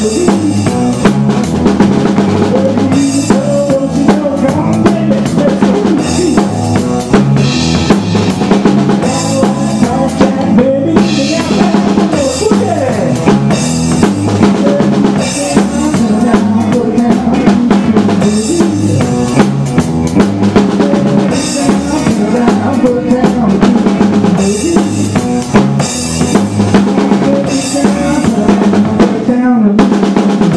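Live band playing an uptempo country-rock number: a drum kit drives a steady beat with bass drum and snare under electric guitars.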